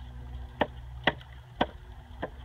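Thoroughbred horse trotting: three sharp clicks about half a second apart, in time with its stride, over a low steady rumble.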